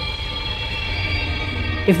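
Background music: a steady ambient drone of several held tones over a low rumble, with a woman's voice starting right at the end.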